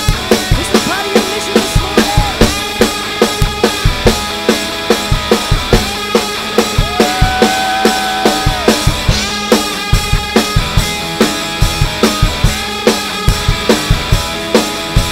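Live worship band playing a contemporary praise song: a drum kit keeps a steady, driving beat under guitars and keyboard, with singing carrying held notes over the top.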